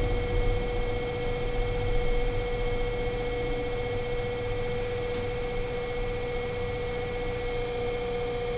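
Electric potter's wheel motor running, a steady hum held at one pitch while the wheel spins.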